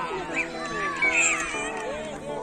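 Spectators and children shouting together, high-pitched falling cries, in reaction to a goalkeeper's diving save in a children's football match.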